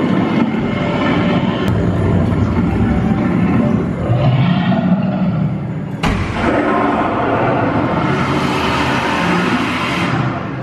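Gringotts dragon fire effect: a dense, rumbling roar, then about six seconds in a sudden whoosh of the flame burst that carries on for about four seconds.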